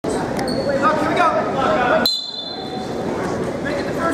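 Voices and shouts of spectators echoing in a school gymnasium as a wrestling bout gets under way, with sharp clicks and two brief high pings, one near the start and one about halfway through.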